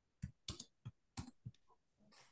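Faint typing on a computer keyboard: about six irregular key clicks.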